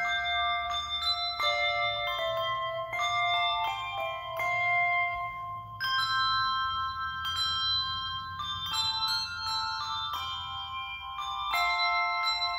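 Handbell choir playing a slow piece: chords and single notes struck one after another, each bell tone ringing on and overlapping the next.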